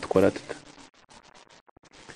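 A man's speaking voice that stops about half a second in, followed by a pause with faint crackling clicks.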